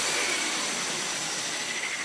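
A soft, even hiss with a faint thin high tone, slowly fading, with no music over it.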